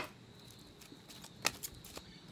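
Quiet handling of paper cards on a wooden table: one sharp tap about one and a half seconds in, with a couple of lighter clicks just after.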